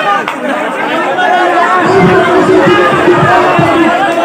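Crowd of spectators chattering and calling out, many men's voices overlapping, with one voice holding a long steady note through the middle.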